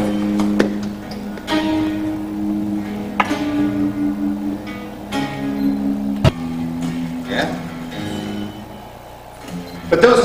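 Electric guitar playing a riff of single picked notes, each ringing on for a second or two before the next. A sharp click about six seconds in.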